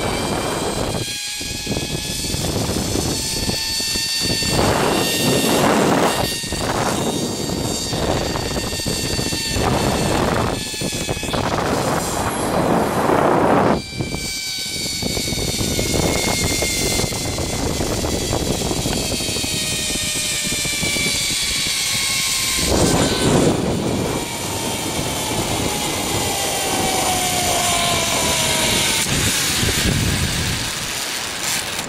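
Zipline trolley pulleys running along a steel cable: a whine that slowly falls in pitch as the rider slows, starting again higher about halfway through. Bursts of wind rush over the microphone.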